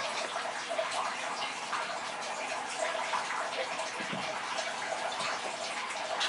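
Steady trickling, splashing water in a turtle tank, with many small irregular splashes and bubbles throughout.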